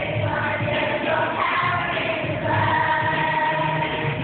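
Children's choir singing together over musical accompaniment, holding a long note through the second half.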